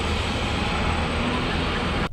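Traffic passing on a rain-soaked highway: steady tyre hiss on wet pavement over a low engine rumble.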